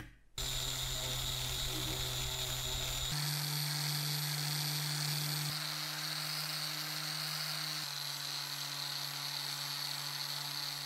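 Small cordless power sander with a triangular pad running steadily while sanding cast metal: a steady motor hum with a high whine over the rasp of abrasive on metal. The pitch steps slightly about three times.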